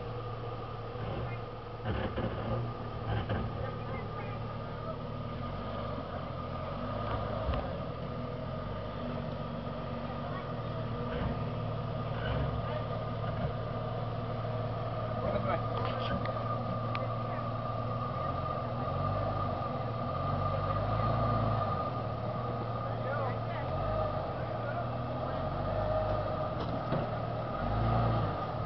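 A 4x4 SUV's engine runs steadily at low revs with a low hum as the vehicle crawls slowly over boulders. Occasional short knocks come from the rocks and the drivetrain.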